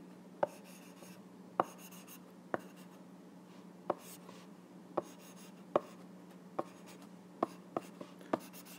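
Stylus tip tapping on an iPad's glass screen while handwriting: about nine short, sharp clicks at uneven intervals, roughly one a second, over a faint steady hum.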